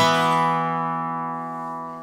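Acoustic guitar chord strummed once at the start, then left to ring and slowly fade.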